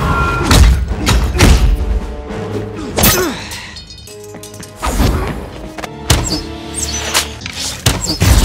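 Film soundtrack of a hand-to-hand fight: dramatic score with a string of heavy thuds and blows over it, quieter for a moment around the middle.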